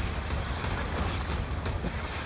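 Steady scraping, rushing noise over a deep low rumble: downhill race skis carving across hard, icy snow.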